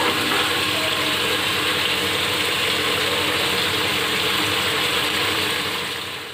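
Vegetable curry sizzling and bubbling in a metal pot as it is stirred with a spatula: a steady crackling hiss that begins to fade near the end.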